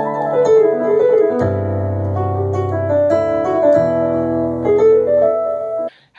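Electric stage keyboard played with a piano-like sound: sustained chords that change every second or so, with low bass notes coming in about a second and a half in. The playing stops abruptly near the end.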